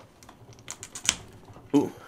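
Several light plastic clicks and scrapes as micro pliers grip and work at the neck joint of an action figure, the sharpest about a second in. The plastic has not been heated enough for the joint to come free.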